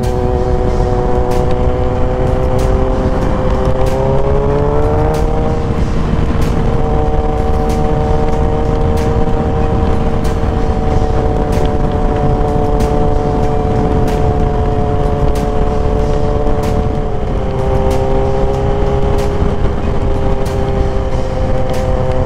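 Suzuki GSX-R sport motorcycle engine running under way, with heavy wind noise on the microphone. The engine pitch climbs over the first few seconds as the bike accelerates, then holds steady at cruising speed and drops a little about three quarters of the way through.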